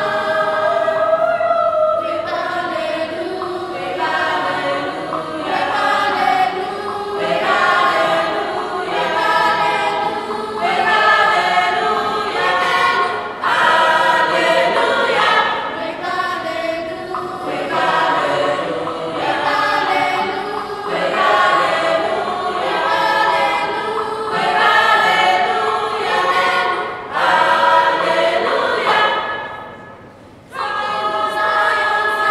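School choir of boys and girls singing an Igbo song in parts, without accompaniment, in short phrases that break off briefly near the end.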